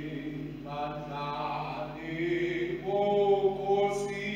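Slow sung hymn or chant during the Eucharist, with long held notes in unhurried phrases.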